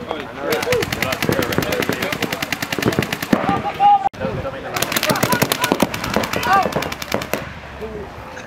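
Paintball markers firing rapid strings of shots, more than ten a second, in two long bursts with a brief pause just before the middle.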